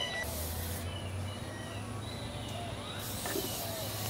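Aerosol can of clear polyurethane spray hissing in two sprays, a short one just after the start and a longer one near the end, as a clear top coat goes onto a photo tile coaster.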